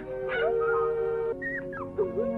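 A cartoon dog whimpering twice, in short high whines, the second falling in pitch, over soft sustained background music.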